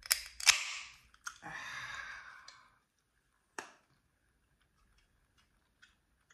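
An aluminium iced-tea can being opened: the pull tab cracks the seal with two sharp clicks, followed about a second later by a short hiss. One more sharp click comes a little after the middle.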